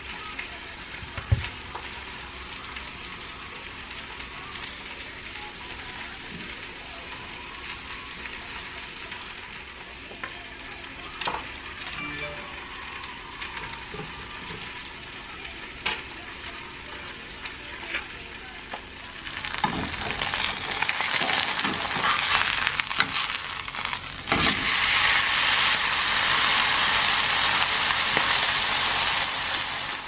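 Chopped chicken and shredded mozzarella frying in a pan, a steady sizzle that grows much louder about two-thirds of the way through. A few light knocks sound over it in the first half.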